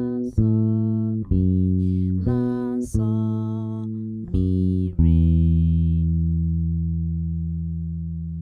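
Electric bass guitar played solo: a short line of about six plucked notes, roughly one a second, then a low note held and left to ring for the last three seconds.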